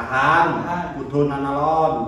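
A man's voice in two long, drawn-out phrases of about a second each, held at a fairly steady pitch.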